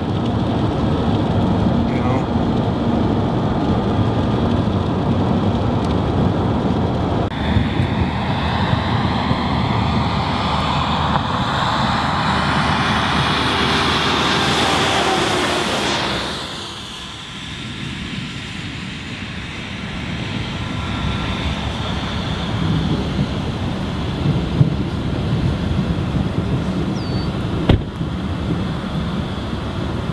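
Road and vehicle noise over a steady rumble of wind on the microphone. A broader whoosh swells over several seconds to a peak about halfway through, then cuts off suddenly. A single click comes near the end.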